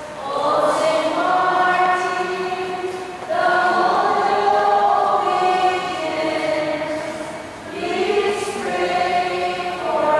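A group of voices singing a slow hymn in long, held phrases, with short breaks between phrases about three seconds in and just before eight seconds.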